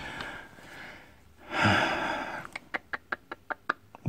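A man's loud breathy exhale, like a sigh, about a second and a half in, followed near the end by a quick run of about eight light clicks.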